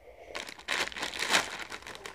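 Plastic snack bag crinkling in irregular rustles, starting about a third of a second in.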